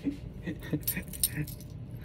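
Light clicking and metallic jingling from handling, with about five sharp clicks in the second second, as dropped cards are gathered up.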